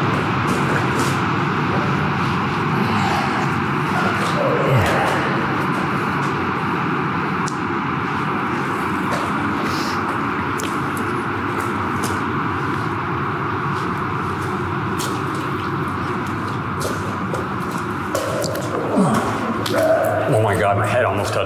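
Steady rushing noise filling a concrete drain tunnel, with scattered light footsteps on its wet floor.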